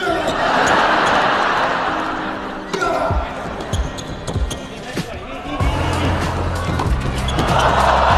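Tennis ball struck back and forth by rackets during a doubles rally, over crowd noise that is loudest near the start and again near the end. Background music with a steady bass line comes in a little past halfway.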